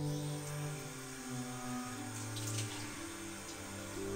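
Bathroom sink tap running into the basin, under background music of sustained instrument notes.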